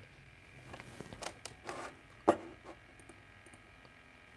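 A few scattered light clicks and taps from a laptop keyboard and trackpad, with one louder knock a little past two seconds in.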